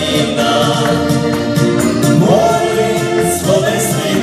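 Live band music: men singing a song over electronic keyboards and a steady beat, the voice sliding up into held notes about two seconds in and again near the end.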